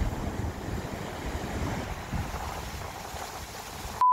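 Rough sea with large waves breaking in a steady rush of surf, with wind buffeting the microphone. It slowly gets quieter.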